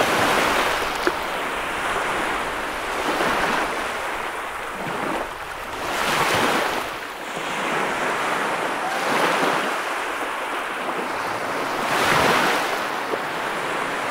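Ocean surf breaking on a beach: waves crash and the foam washes back and forth, swelling and ebbing about every three seconds.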